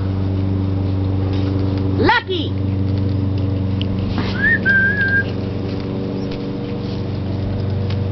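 A person whistles one short note that rises and then holds level for under a second, about four and a half seconds in. A quick rising sweep comes about two seconds in. A steady low mechanical hum runs underneath.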